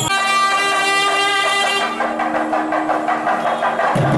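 Nadaswaram holding one long, steady reed note, its bright upper overtones fading after about two seconds.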